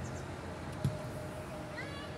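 Outdoor youth football match sound: a single dull thump of a ball being kicked about halfway through, then near the end a brief high-pitched shout that rises in pitch, over a steady background murmur.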